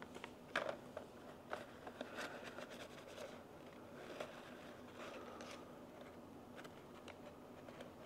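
Faint rustling, scraping and light ticks of a fluted paper coffee filter being peeled from a stack and pressed into a clear plastic pour-over dripper.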